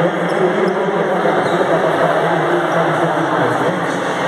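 Crowd babble in a large gymnasium: many voices talking at once in a steady, even din.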